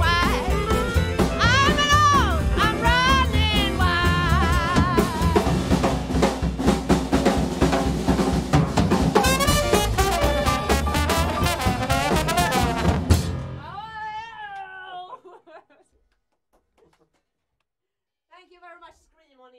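A small live jazz band of clarinet, piano, upright bass and drum kit playing with a woman singing, ending the tune with a final drum-kit crash about 13 seconds in. A last held note drops away over the next two seconds, then near silence.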